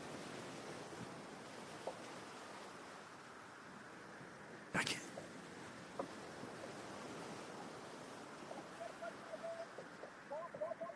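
Faint steady wind and water noise aboard a sailing yacht under way, with one sharp click a little under halfway through, a few lighter ticks, and faint short squeaks near the end.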